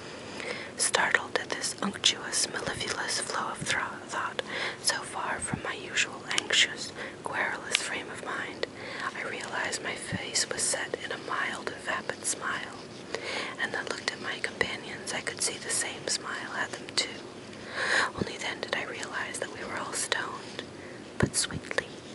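A person whispering, reading a book passage aloud in a steady, breathy voice with sharp hissing 's' sounds.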